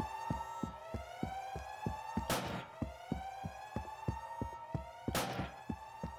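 Police siren wailing in repeated rising sweeps about every second and a half, over quick, even thuds about four a second. Two brief rushing sounds come about halfway through and near the end.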